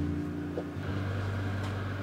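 Steady mechanical hum of a running appliance or fan, with a broader rushing noise joining in about a second in.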